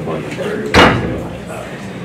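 A single loud bang about three-quarters of a second in, with a short ring-out, over a low murmur of voices.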